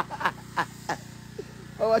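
A man's laughter trailing off in a few falling pulses, then a quieter stretch over a faint steady low hum, and a spoken word near the end.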